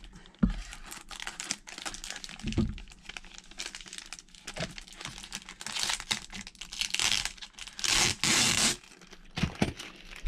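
Plastic packaging bag crinkling and rustling as it is handled and pulled from a cardboard box, with louder bursts about six seconds in and again around eight seconds. The noise is scratchy and described as never sounding very pleasant.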